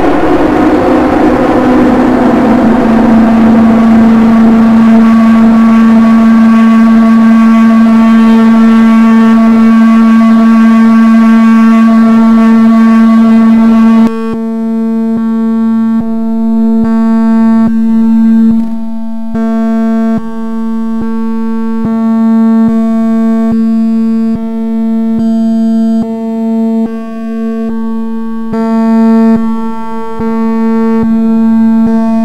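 Experimental electronic music: a synthesizer drone held on one low note with many overtones, dense and noisy at first, then abruptly thinning to a cleaner, buzzing tone about halfway through, broken by small clicks and dropouts.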